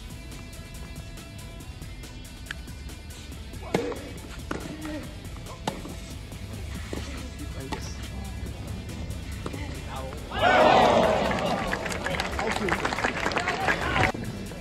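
Tennis ball struck a few times in a rally on a clay court, sharp single hits about four to six seconds in. About ten seconds in, a crowd suddenly cheers and applauds, the loudest sound, easing off toward the end.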